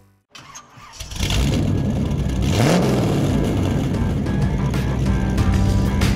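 A motor vehicle engine starts about a second in and revs, its pitch rising near the middle, mixed with music.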